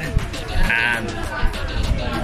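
Voices talking over background music, with a short, wavering high-pitched sound a little under a second in.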